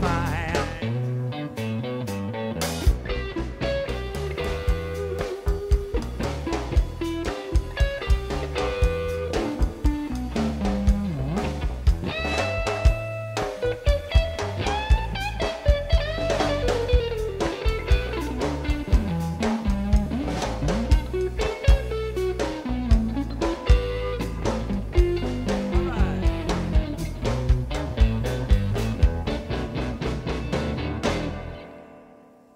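Live blues band playing an instrumental passage: electric guitar playing lead lines with bent notes over electric bass and a drum kit keeping a steady beat.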